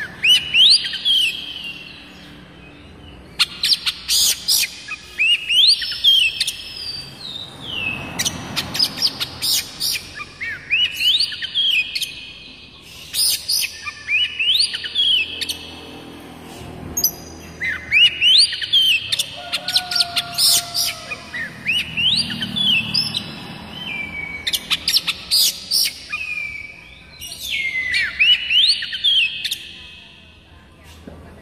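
Oriental magpie-robin singing: repeated phrases of rising and falling whistled notes mixed with sharp high notes, a new phrase every two to three seconds.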